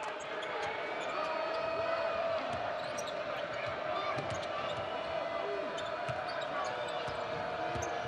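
Basketball arena crowd noise during live play, with a basketball being dribbled and sneakers squeaking on the hardwood court. A steady held tone runs under the crowd through most of it.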